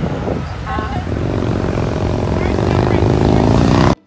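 Charter coach's diesel engine pulling away past the listener, its pitch climbing steadily and growing louder over the last three seconds, with brief voices about a second in. The sound cuts off abruptly just before the end.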